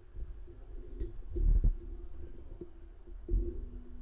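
Handling noise from a microphone on a desk boom arm being moved into position: low thumps and knocks, the loudest about a second and a half in and another near the end, with a few light clicks.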